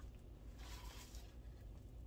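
A box being opened by hand: a faint, brief rustle about half a second in, over a low steady room hum.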